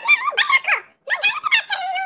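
Talking Tom's high-pitched, sped-up cartoon voice chattering in short squeaky phrases, with a brief break about a second in.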